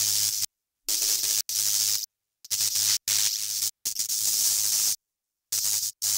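Hissing electronic static in irregular bursts of about half a second to a second, each cutting off sharply into silence, with a faint low hum underneath.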